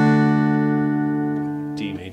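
D major chord on an acoustic guitar ringing and slowly fading. A voice starts near the end.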